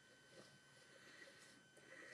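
Near silence: room tone with a faint steady high tone.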